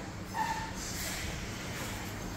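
Steady low background noise with one short, flat beep about a third of a second in.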